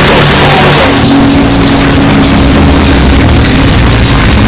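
Very loud, heavily distorted meme song audio that cuts to a different, pitch-shifted clip about a second in, with a steady low tone under dense distorted noise.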